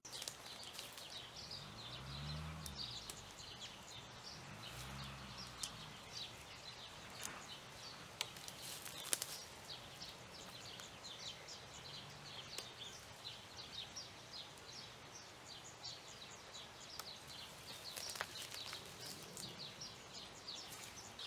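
A small bird chirping over and over in quick short notes, with a couple of sharp snaps of willow branches being broken off by hand.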